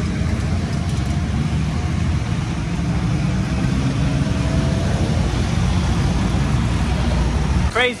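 A stream of small motorcycles, with a few cars, passing close by in an unbroken line of traffic, their engines running together steadily.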